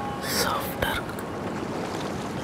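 A hushed whispered voice with a breathy hiss about a third of a second in and a soft click near the middle, over a low steady wash of sea waves.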